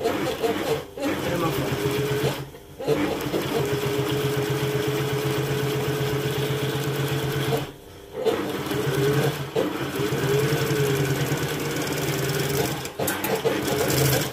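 Industrial sewing machine running at a steady speed as it stitches a straight seam through foam-backed leatherette, a constant motor hum with the rapid beat of the needle. It stops briefly about a second in, near three seconds and around eight seconds, then starts again.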